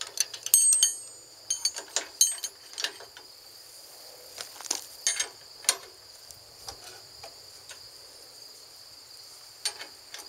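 Steel wrenches clinking and clicking against trailer coupler hitch bolts and safety chain links as the bolts are tightened. The clinks come in scattered bursts, one ringing briefly about half a second in, and thin out in the second half. A steady high insect drone runs underneath.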